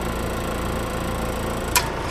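Antique Westinghouse vending-machine refrigeration compressor cycling back on: a single sharp click of the thermostat contacts closing near the end, as the compressor and its condenser fan start, over a steady low hum.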